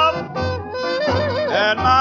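1940s jump blues band recording, with piano, trumpet, saxophones and drums playing an instrumental passage between sung lines. A wavering horn melody carries over the band, with the dull top of an old recording.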